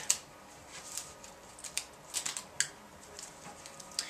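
Screen-printing master film crackling under the fingers as it is stretched and pressed down onto double-sided tape on a clip frame: a scatter of small, sharp clicks.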